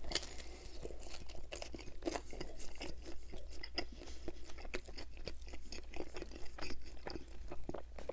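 Close-miked chewing of a bite of pizza: irregular wet mouth clicks and crunches of the crust, over a low steady hum.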